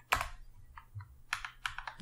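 Computer keyboard keystrokes: a few separate key clicks, one just after the start and a quick run of three near the end.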